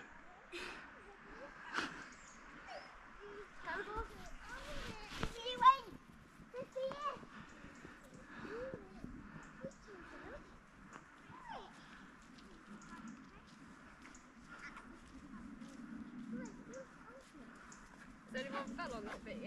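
Faint, distant voices of children and adults talking and calling, with a few brief knocks; the loudest moment is a short sharp sound a little under six seconds in.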